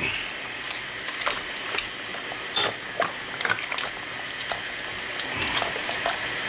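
Outboard carburetor body being handled and scrubbed over a bucket of hot soapy water: irregular clicks and scrapes of metal with light splashing.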